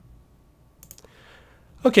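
A few quiet computer mouse clicks, with two or three close together about a second in.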